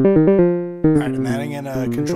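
A synthesizer sequence of short pitched notes played through a BMC114 Diode Break waveshaper, which breaks a clean sine wave into a distorted shape. About a second in, a longer note sounds with a harsh, gritty edge whose overtones shift as the shaping changes.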